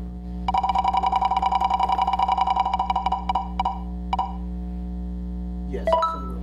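Game-show spinning-wheel sound effect: rapid, even ticking over a steady ringing tone. The ticks slow and stop a little after four seconds in as the wheel comes to rest.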